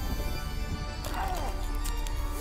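Dark horror-film soundtrack: a low, steady drone of music, with a brief wail sliding down in pitch about a second in.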